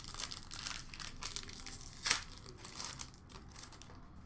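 Crinkling and rustling of a hockey card pack wrapper and cards being handled, in a string of short crackles, with one sharper snap about two seconds in.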